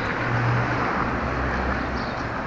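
Road traffic on a city avenue: a steady rush of noise with a low engine hum, as a car comes along the road.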